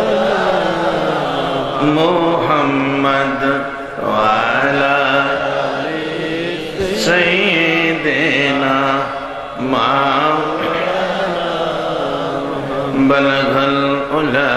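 A man chanting a devotional melody in long, drawn-out phrases with held, wavering notes, pausing briefly between phrases.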